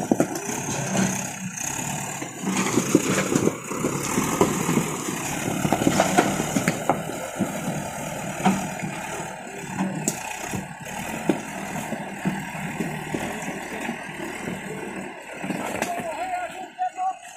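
JCB 4DX backhoe loader's diesel engine running as its front bucket pushes through and crushes a pile of full beer cans, with many short crunching and clattering clicks from the metal cans.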